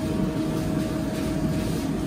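Steady hum and rush of commercial kitchen machinery, with a faint constant tone over a low rumble.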